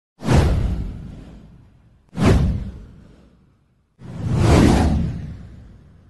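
Three whoosh sound effects of a news intro title card, about two seconds apart. The first two hit suddenly and fade away; the third swells in more gradually before fading.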